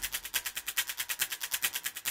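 Tail of a TV programme's opening theme music: a fast, even ticking rhythm, about seven or eight ticks a second, with the deep beat of the music dropped out.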